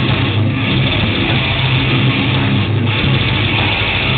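A black metal band playing live: a loud, dense wall of distorted electric guitar, bass and drums, with a heavy low end.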